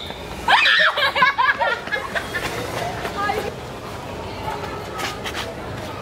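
A passerby's high-pitched vocal outburst at a masked prankster: a long cry about half a second in, then a quick run of short, laugh-like calls. Quieter street noise follows.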